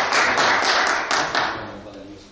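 Audience applauding, a dense patter of many hands clapping that dies away over the second half.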